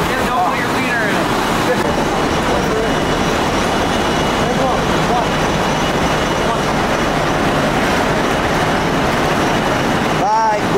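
Warehouse conveyor system running: a steady, loud mechanical din from belt and roller conveyors, with faint voices under it.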